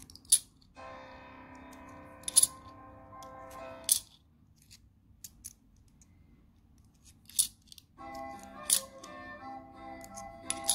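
Bimetallic 2 euro coins clinking against each other as they are slid one by one off a stack held in the hand: a sharp metallic click every second or two. Background music plays underneath and drops out for a few seconds in the middle.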